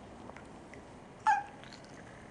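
A baby's single short, high-pitched squeal, a bit past halfway through, over quiet room tone.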